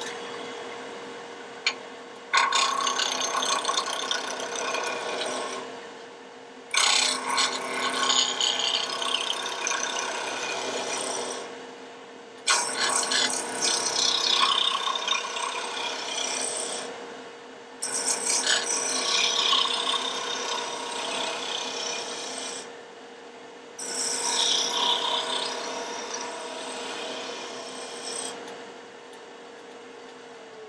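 A wood lathe turning a spindle while a sharp hand-held turning tool cuts it. There are five cutting passes of a few seconds each, every one starting suddenly and fading out, with short pauses between them, over the lathe motor's steady hum.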